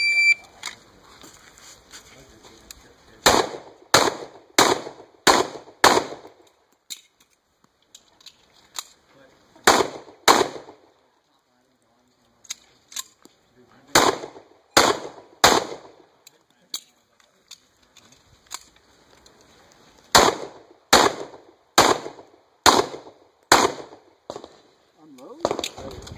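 A shot timer beeps once, then a semi-automatic pistol fires fifteen shots in four strings of five, two, three and five, with pauses of a few seconds between strings. Within each string the shots come about two to three a second.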